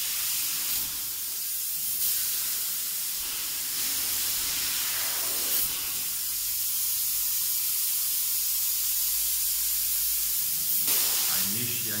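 Spray foam insulation gun hissing steadily as it sprays polyurethane foam onto a wall.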